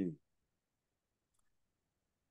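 The end of a spoken word, then near silence with one faint, brief click about one and a half seconds in.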